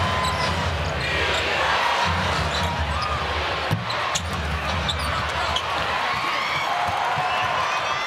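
Basketball arena game sound: steady crowd noise with a ball bouncing on the hardwood court and scattered short squeaks and clicks.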